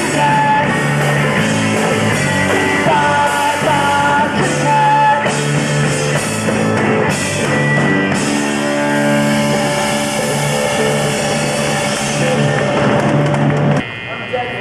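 Live rock band, with electric guitars and a drum kit, playing a power-pop song. The music stops abruptly at the very end as the song finishes.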